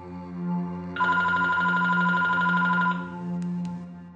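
Telephone ringing once, a trilling ring of about two seconds starting about a second in, over a steady low musical drone. Two faint clicks follow the ring.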